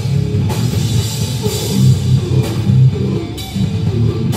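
Hardcore band playing live: distorted guitars, bass and drum kit in a heavy riff, with a crash cymbal hit about once a second.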